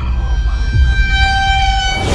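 A sustained high-pitched tone with several overtones, steady in pitch, growing stronger about a second in over a low rumble, then breaking off.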